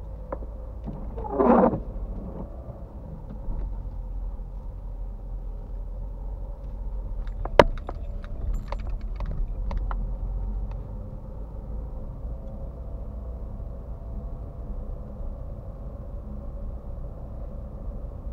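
Low, steady engine and tyre rumble inside a car's cabin as it rolls slowly through a car park, with a short voice-like burst about a second and a half in and a sharp click about halfway through.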